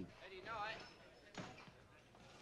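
A faint voice speaking briefly, then a single sharp click or knock about a second and a half in, over low room background.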